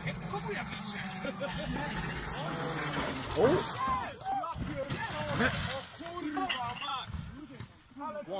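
A car engine running steadily for about the first three seconds, then several people shouting and crying out excitedly.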